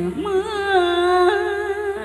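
Vietnamese vọng cổ-style singing: a woman's voice glides up into a long held note with slow bends.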